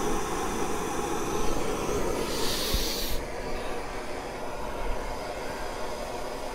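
Gas torch flame rumbling steadily into a charcoal chimney starter to light the charcoal, with a sharper hiss for about a second just after two seconds in.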